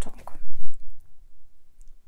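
A few small clicks and a short low thump about half a second in: mouth and handling noise from a close-miked speaker pausing between sentences.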